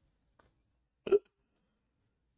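A man's single short laughing gasp about a second in, a brief hiccup-like vocal burst.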